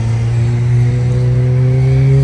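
A motor vehicle's engine running steadily, its hum slowly rising in pitch as it picks up revs.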